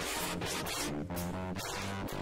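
Small jazz combo playing live: saxophones and trombone over electric piano, drum kit with cymbals, and bass.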